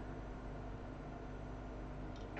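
Quiet room tone: a steady faint hiss with a low electrical hum underneath, and no distinct sound.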